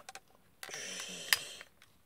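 Plastic toy flip phone, the Bandai DX Climax Phone, being folded shut: about a second of plastic sliding and rubbing at the hinge, with a click a little over a second in.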